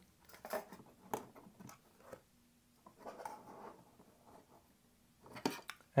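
Faint handling noise from the M4 Mac mini's blower fan being lifted out and its cable disconnected: a few scattered small clicks and a soft rustle, the loudest clicks near the end.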